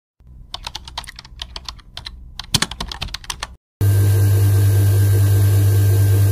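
A run of irregular sharp clicks for about three seconds, then a jade-carving machine's motor starts running with a loud, steady hum as its felt polishing wheel spins against a carved jadeite piece.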